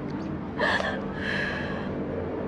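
A woman crying: a sharp gasping breath about half a second in, then a longer shaky sobbing breath.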